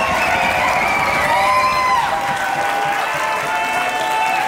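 Audience applauding and cheering, with long drawn-out whoops carried over the steady clapping.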